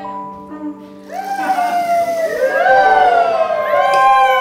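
Band music with trumpet and electric keyboard holding steady notes. From about a second in, overlapping sliding tones rise and fall like a siren wail.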